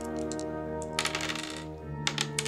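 Percentile dice clattering on a table, rolled for a Call of Cthulhu stealth check, in short clusters of clicks over steady ambient background music.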